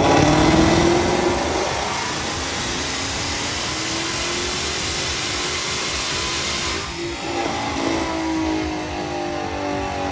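Roush-supercharged 5.0-litre V8 of a 2022 Ford Mustang GT under full throttle on a chassis dyno during a baseline power pull, loud, its note climbing in pitch. It dips briefly about seven seconds in and climbs again.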